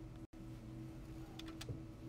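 Quiet room tone with a steady low electrical hum, broken by a moment of dead silence about a quarter second in, with a few faint clicks near the end.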